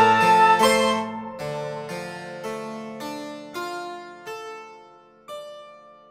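Prepared piano playing struck chords that slow down and grow quieter, each ringing with a bright, metallic edge. The last chord comes about five seconds in and is left to die away as the piece closes.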